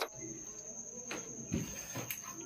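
A cricket trilling steadily on one high, thin note, with a faint soft knock about halfway through.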